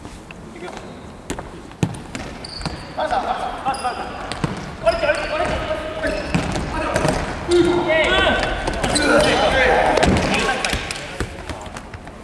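Indoor futsal play on a hardwood sports-hall floor: sharp thuds of the ball being kicked and bouncing, short high squeaks, and players calling out, all echoing in the large hall. The calling is busiest and loudest in the second half.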